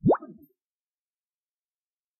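A single quick rising-pitch 'plop' sound effect, a short upward sweep over in about a fifth of a second.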